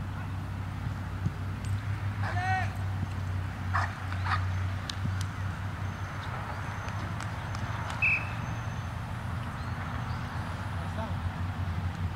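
Distant players shouting on an open soccer field, one high call about two and a half seconds in and a few more shortly after, over a steady low rumble.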